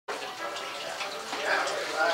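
Indistinct chatter of several voices in a room.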